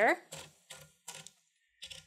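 We R Memory Keepers Typecast manual typewriter's platen being turned to roll a sheet of paper in: a short run of light, separate clicks, then a pause.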